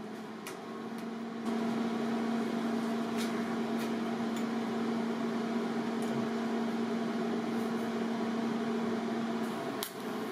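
Steady electrical hum with a fan-like hiss from a TIG welding setup standing ready, stepping up in level about a second and a half in. Near the end the hum breaks off with a sharp click as the TIG arc is struck.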